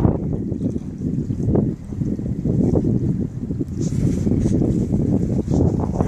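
Wind buffeting the microphone on an open boat: a loud, uneven low rumble.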